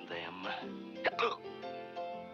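A cartoon character's short wordless vocal noises, hiccup-like, with a sharp click about a second in, over the cartoon's orchestral score. The score carries on alone in the second half.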